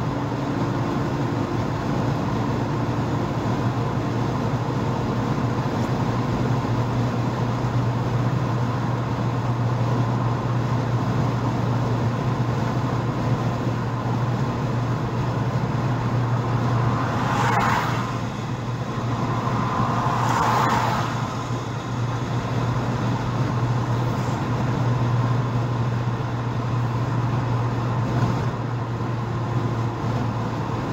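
Car cabin noise at highway speed: steady engine drone and tyre and road rumble, with two short swells of rushing noise a little past the middle.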